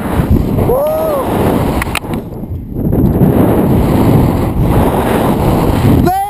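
Wind rushing hard over a helmet-mounted camera microphone during a rope jump's freefall and swing, easing briefly about two seconds in. A short shout rises and falls about a second in.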